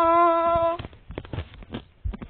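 A voice holding one long hummed note, the last 'dun' of a sung suspense jingle, which stops under a second in. After it come a few soft clicks and knocks.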